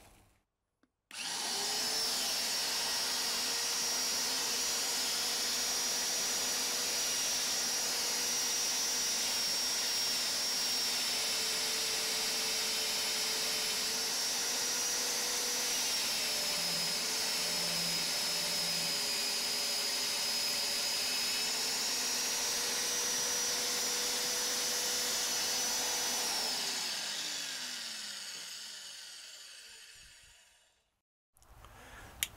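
VEVOR MD40 magnetic drill's 1100 W motor starting about a second in and running with a steady whine while a 16 mm annular cutter bores through a steel box-section beam; the pitch dips a little midway under the cutting load. Near the end the motor is switched off and winds down, its pitch falling.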